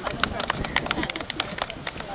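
A few people clapping unevenly, sharp separate claps with no steady beat, over low chatter.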